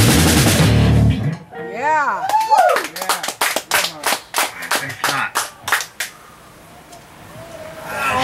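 A heavy metal band (distorted electric guitars, bass and drum kit) stops abruptly about a second in. Then come a couple of short whooping yells and a few seconds of hand clapping from one or two people.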